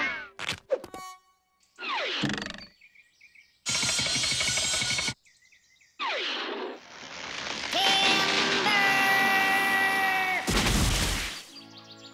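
Cartoon sound effects over music: a string of short comic effects and pitch glides, a noisy burst, and a long held musical chord, then a heavy crash near the end as a tree falls.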